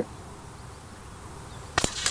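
A single shot from a .177 Air Arms TX200 spring-piston air rifle: one sharp crack near the end.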